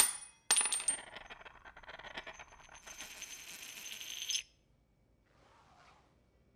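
A small metal bullet drops onto a tile floor. It hits with a sharp ping, bounces and rattles, then rolls with a fading metallic tinkle that stops abruptly about four and a half seconds in. The bullet has just been deflected off a bulletproof body.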